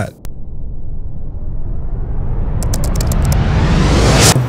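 A cinematic riser sound effect: a rushing noise over a deep rumble that grows steadily louder and brighter. It opens with a click, and a quick run of high ticks comes near the end as it builds toward a hit.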